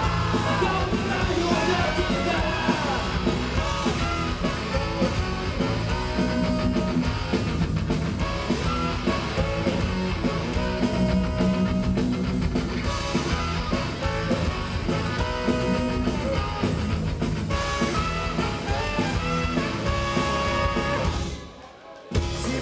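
Ska-punk band playing live, with drums, bass guitar, saxophone and trumpet under a sung lead vocal. The song stops abruptly just before the end.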